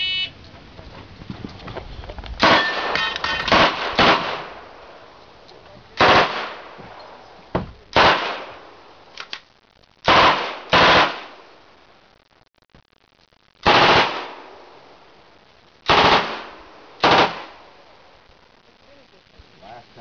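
A shot-timer beep, then a submachine gun fired on full auto in short bursts: a quick string of bursts about two seconds in, then single bursts every one to three seconds until about seventeen seconds in.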